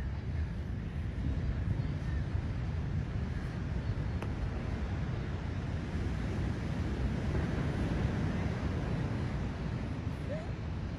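Wind buffeting the microphone: a steady low rumble that keeps rising and falling in strength, over a fainter even rush. A single faint tick comes about four seconds in.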